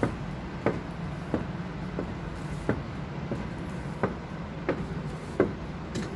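Footsteps of a person walking at an even pace, about three steps every two seconds, over a steady low hum.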